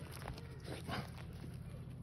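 Footsteps crunching on a gravel and pebble path, a few irregular steps.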